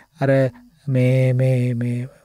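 A man's voice: a short syllable, then a single vowel drawn out at one steady pitch for about a second, a held filler sound between words of his talk.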